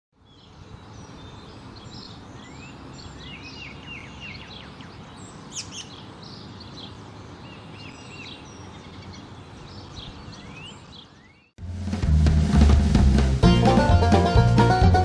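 Several birds chirping and calling over a steady low outdoor background noise. About eleven and a half seconds in, this cuts off sharply and loud bluegrass-style banjo music starts.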